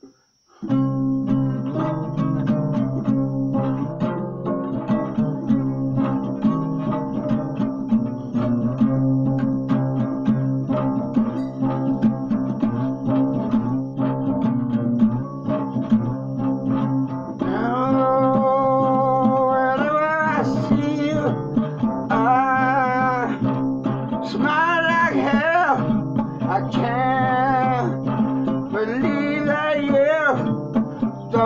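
An acoustic guitar is strummed steadily in a rhythmic pattern, starting just under a second in. About halfway through, a voice starts singing over it.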